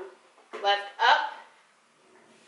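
A woman's voice, two short spoken syllables about half a second to a second and a half in.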